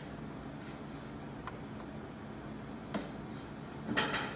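Steady low workshop hum with a few faint, light taps of thin plywood as the rail is pressed against the frame notches, the sharpest about three seconds in.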